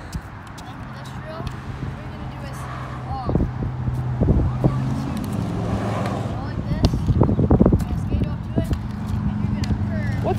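A motorcycle engine droning low and growing steadily louder as it approaches, with the short taps of a hockey stick working a ball on asphalt over it.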